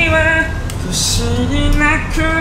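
Singing: a voice holds a slow melody in long, stepped notes, in two phrases, over a steady low rumble.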